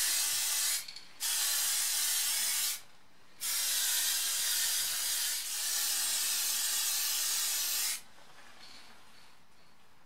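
Aerosol spray-paint can hissing in three bursts: a short one, a longer one of about one and a half seconds, and a long one of about four and a half seconds, stopping about two seconds before the end.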